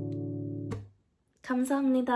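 Acoustic guitar's last strummed chord ringing, then muted about three quarters of a second in. After a short silence, a woman's voice starts near the end.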